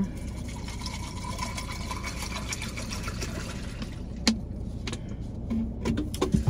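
Water poured from a plastic bottle into a tumbler full of ice, a steady trickle lasting about three and a half seconds, followed by a sharp click about four seconds in.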